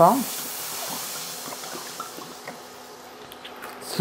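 Red wine poured into a hot stainless steel pan to deglaze the browned bottom, hissing and sizzling as it hits the metal. The hiss is strongest at first and slowly dies away as the pan cools.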